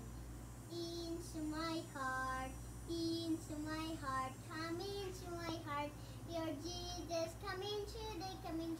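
A young boy singing solo without accompaniment, in held notes and phrases that begin about a second in. A steady low hum runs underneath.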